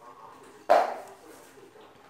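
A single sharp clack about two-thirds of a second in, fading within half a second, from the small reduction gearbox with built-in hydraulic tipper pump as it is handled and turned by hand.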